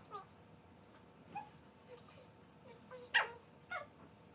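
Several short, high-pitched vocal calls, each falling in pitch. The loudest comes about three seconds in.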